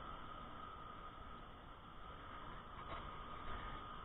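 Steady low background hiss with a faint, even high hum, and no distinct handling sounds.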